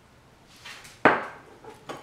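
A single sharp knock about a second in, followed by two lighter taps, as objects are set down on a tabletop.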